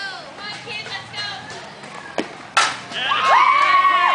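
A softball bat cracks sharply against the ball a little over two seconds in, and then spectators yell and cheer loudly as the ball is put in play.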